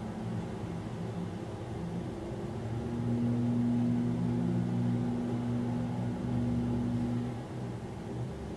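A steady low mechanical hum, swelling louder from about three to seven seconds in.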